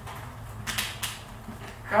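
Room tone in a lecture room: a steady low hum with a few faint short clicks or creaks about three-quarters of a second to a second in.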